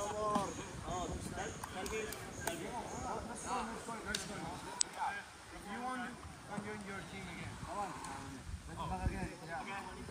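Voices of several volleyball players calling out and chatting across the sand, not close to the microphone, with a few short sharp knocks like hands hitting the ball.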